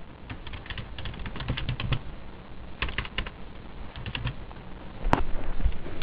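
Typing on a computer keyboard in three short runs of keystrokes, with one single sharper click about five seconds in.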